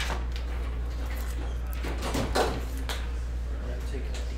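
Trading cards and plastic card holders being handled: sliding scrapes and light knocks, the loudest about two seconds in, over a steady low hum.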